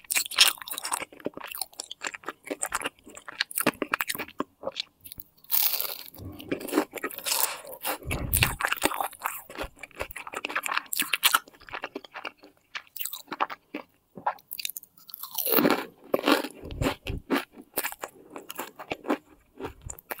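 Close-miked chewing of flaky egg-tart pastry: many small, irregular crisp crunches, louder in a few clusters.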